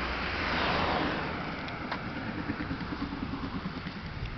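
A car passing close by on a highway, its tyre and engine noise swelling to a peak just under a second in and then fading as it draws away.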